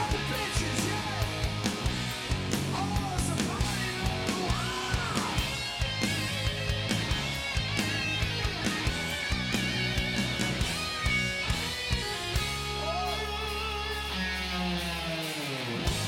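Live heavy metal band playing: distorted electric guitar with bent, gliding notes over a steady drum beat and bass. Near the end a low held note drops away in pitch.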